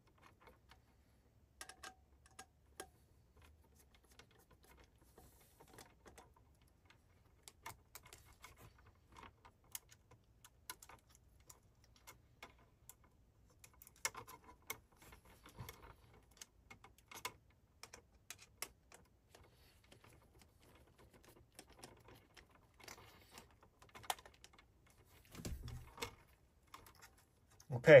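Scattered, irregular small clicks and rustles of hands handling a plastic fire alarm heat detector and its wires during replacement, with a short low rumble near the end.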